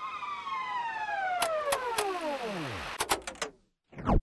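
A steady electronic tone, rich in overtones, slides smoothly down in pitch over about three seconds like a power-down or tape-stop effect. A few sharp clicks fall in the middle and near the end, and then it cuts off to silence.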